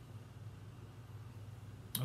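Low steady hum of room tone, with one sharp click near the end.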